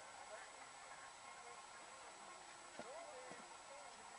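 Near silence with faint, indistinct voices in the background, a few brief voiced sounds about three seconds in.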